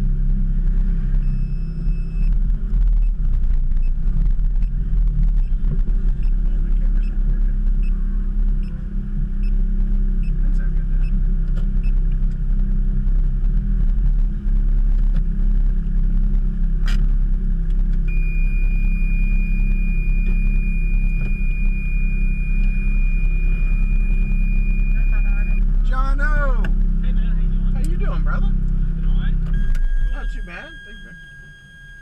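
Car engine idling, heard from inside the cabin as a steady low rumble while the car creeps forward and stops. It cuts off right at the end. A steady high-pitched tone sounds for several seconds in the second half.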